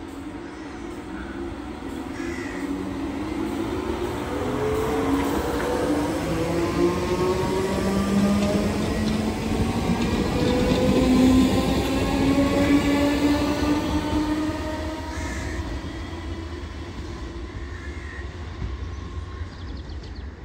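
British Rail Class 313 electric multiple unit accelerating out of the station, its traction motors whining and rising steadily in pitch. The sound grows loudest midway as the carriages pass close by, then fades as the train draws away.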